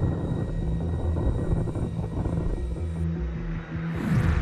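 A rushing, rumbling sound effect for a burning satellite streaking through the atmosphere, over a low sustained music drone; a high hiss on top cuts off about three seconds in.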